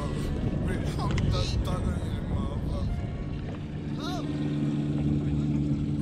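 A boat's motor humming steadily under indistinct voices; the hum becomes more prominent about halfway through.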